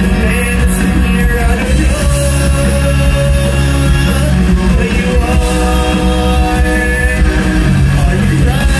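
A live rock band playing a song, with electric guitars, drums and singing, loud and unbroken, recorded from within the crowd.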